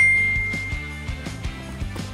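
A single bright bell-like ding that rings out and fades over about a second and a half, over steady background music.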